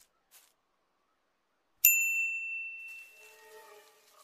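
A single bright, bell-like ding on the cartoon soundtrack. It comes in suddenly about two seconds in and rings out and fades over about a second and a half, with faint held musical notes entering under its tail.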